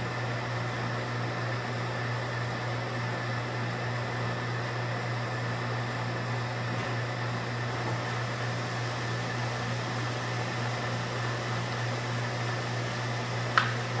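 Steady fan-like mechanical hum with a low, unchanging drone in a small room, with nothing else happening until a sharp knock or two near the end.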